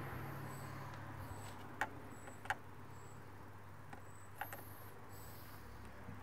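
Faint clicks of a Phillips screwdriver working plastic push-pin retainers on a Jeep Wrangler's grille panel: two short clicks a little under a second apart, then a fainter one, over a low steady hum.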